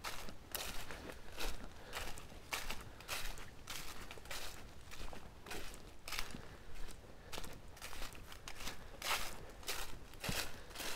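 Footsteps through a thick layer of dry fallen leaves on a forest floor, at a steady walking pace of about two steps a second.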